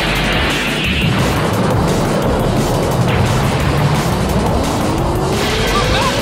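Cartoon energy-beam blast sound effect: a long, dense, steady rush of noise laid over dramatic music, with a tone rising in pitch over the last second and a half.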